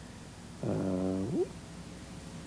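A man's drawn-out hesitation 'uh', about a second long, starting just under a second in, over faint steady background hiss.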